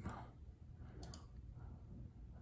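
Two faint, quick clicks about a second in, over quiet room tone.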